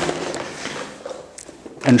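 Faint rustling of a stiff plastic sack of perlite dry fill being handled at its top, dying away about a second in.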